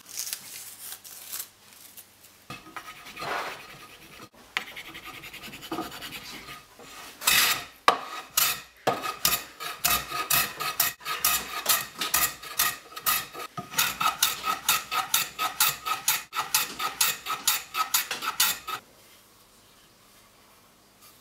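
Hand file rasping in quick, even strokes, about three a second, across the edges of a cast-iron hand plane's sole to round them over. It is preceded by a few seconds of lighter, irregular scraping and stops abruptly near the end.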